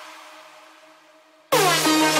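Electronic dance music at a breakdown: a reverb tail fades almost to silence, then about one and a half seconds in a loud, brassy synth chord cuts in with a quick downward pitch bend.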